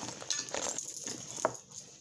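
Hands rummaging in a handbag's main compartment: rustling with a few short, light clinks and taps of small items.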